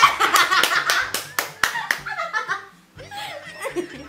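A group laughing hard with a burst of hand claps through the first two seconds, then the laughter dies down and picks up again near the end.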